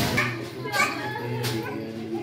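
Children's and adults' voices chattering over background music with held tones. There is a sharp click right at the start and another about a second and a half in.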